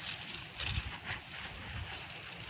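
Rustling and crackling of dry stalks and leaf litter being pushed through by hand, with two dull thumps, one a little under a second in and one near the end.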